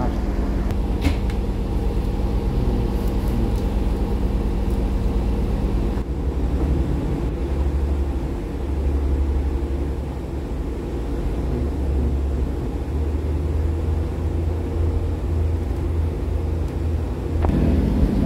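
Class 144 Pacer diesel railcar's underfloor engine heard from inside the carriage: a steady hum, then about six seconds in the note drops to a deeper, heavier drone as the train pulls away. Near the end the engine tone changes again.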